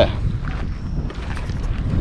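Wind buffeting the camera microphone: a steady low rumble.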